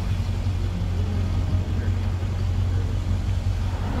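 Steady low rumble of a car driving, engine and tyre noise heard from inside the moving vehicle.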